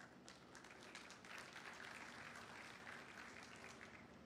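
Faint audience applause, building over the first second and dying away near the end.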